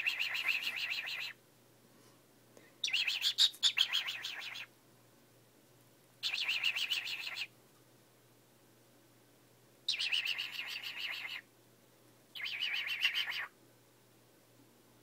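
A cockatiel giving five harsh, rapidly pulsing calls, each lasting a second or so, with short pauses between them.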